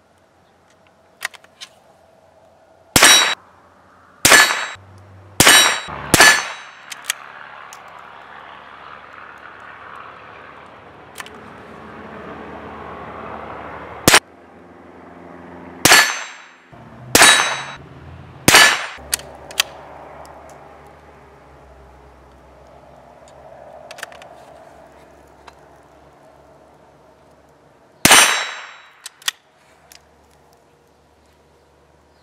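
A Daisy Legacy 2201 single-shot .22 Long Rifle bolt-action rifle being fired: about nine sharp cracks with short echoing tails, four in quick succession a few seconds in, four more in the middle and one near the end. Faint clicks between the shots.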